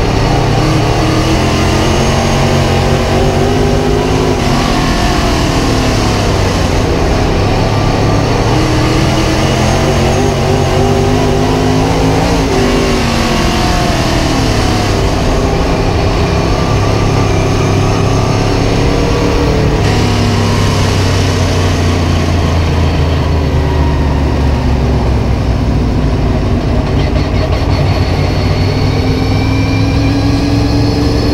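Super Late Model dirt racing car's V8 engine at racing speed, heard from inside the cockpit. The engine is loud throughout, its pitch rising as the throttle opens and falling off as it eases, over and over through the 30 seconds.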